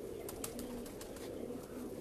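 Domestic pigeons cooing faintly: a low, steady murmur, with a few faint clicks about half a second in.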